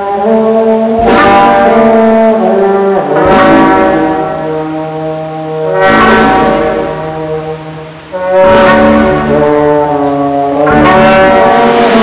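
Brass band of trumpets, clarinet, trombone, sousaphone and euphonium playing a Holy Week sacred march (marcha sacra) in long held chords. A percussion crash marks each new chord about every two and a half seconds; the band fades near the middle and comes back in loud just after eight seconds.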